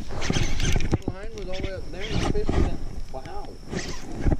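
A person's voice making drawn-out, wordless sounds that rise and fall in pitch.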